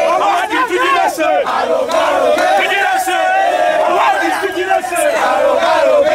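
A large crowd shouting together at full voice, many voices overlapping in a continuous loud din with no break.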